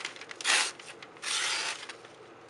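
A thin-ground hammer-forged Damascus knife slicing through a hand-held sheet of newspaper in two strokes, the second one longer. Each is a short rasping cut of paper.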